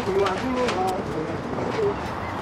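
Pigeons cooing: a few short, low, level-pitched coos.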